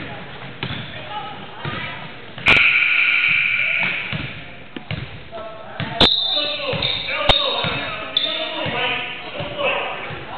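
Basketball game in a school gym: players and spectators talking and shouting, a basketball bouncing on the wooden floor, and a few sharp knocks. A loud, steady high-pitched tone starts about two and a half seconds in and lasts about a second and a half.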